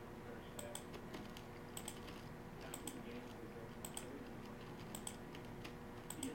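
Computer mouse clicking at a steady pace, about once a second, five clicks in all. Each click is a quick double tick as the button is pressed and released, re-running an online list randomizer.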